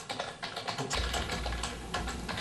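Fingers typing quickly on a computer keyboard, a rapid patter of key clicks, with a low hum coming in about a second in.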